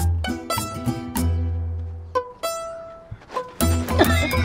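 Lively music of plucked strings over a steady bass line. It dies away briefly past the middle and starts up again near the end.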